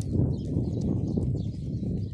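A horse's hoofbeats on a sand arena surface, loudest about when the horse passes closest, at the start, with birds singing in the background.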